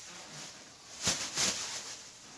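Plastic grocery bag rustling as it is picked up, two short crinkly bursts about a second in.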